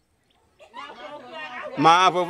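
A man speaking. About half a second of silence comes first, then voices start faintly and grow into loud speech near the end.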